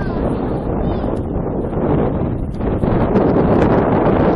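Wind buffeting the microphone, mixed with the distant, steady roar of a jet airliner climbing away after takeoff.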